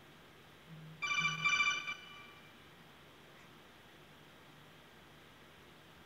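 A short electronic alert tone, about a second in: a bright, rapidly warbling chime lasting about a second, with a low buzz just before and under it.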